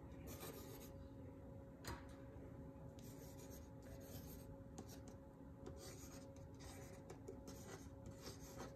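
Faint scratching of an ink pen nib on watercolor paper, in short, irregular strokes as lines are drawn, with a small click about two seconds in.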